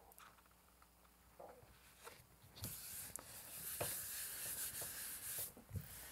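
A hand rubbing the back of a sheet of paper laid on a gel printing plate, pressing it down to pull a monotype print. A faint, soft rubbing hiss starts about two and a half seconds in and stops shortly before the end, after a near-silent start.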